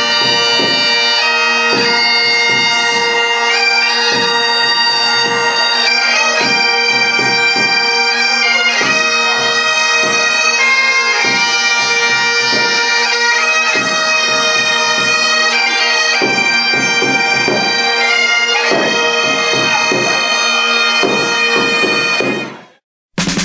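Bagpipes playing a tune over a steady drone, the melody stepping from note to note.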